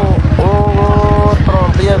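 A man singing, holding one long steady note for about a second before sliding into shorter wavering notes, over a steady, fast, low pulsing.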